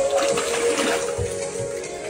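Water splashing and sloshing in a metal cold plunge tub as a body lies back and goes under, loudest in the first second, followed by a couple of low thumps; background music plays throughout.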